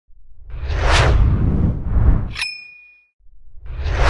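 Whoosh sound effects of an animated logo intro: two swooshes about a second apart, then a sharp metallic ding about halfway through that rings briefly. After a short silence another whoosh builds near the end.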